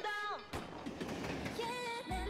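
Female K-pop track playing from the music video: a sung note fades out, then a soft noisy passage with faint held tones, before the bass and beat return.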